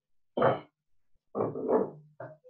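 A dog barking: one bark about half a second in, then two quick barks near the end.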